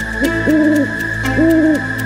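Owl hooting twice, two level hoots of about half a second each, the second a little louder.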